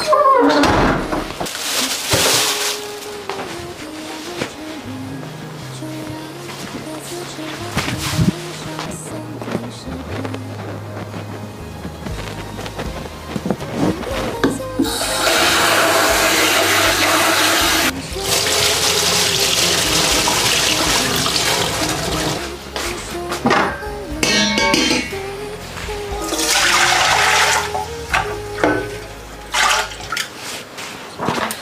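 Tap water running into a plastic scoop of rice as it is rinsed by hand, in stretches of several seconds from about halfway through. Background music plays throughout.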